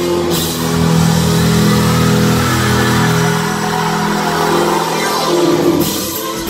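A rock band playing live through a concert hall's PA, recorded from within the crowd: sustained low chords swell in the first half, with held tones and no clear drumbeat.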